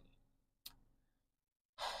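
A quiet pause broken by one faint click, then a woman's sigh, a long outward breath beginning near the end.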